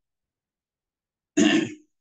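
Dead silence, then about one and a half seconds in a man clears his throat once, briefly.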